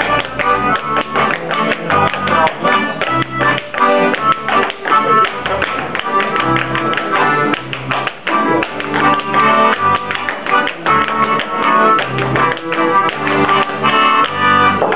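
Clogs tapping out fast, rhythmic steps on a wooden floor over an accordion playing a lively traditional dance tune.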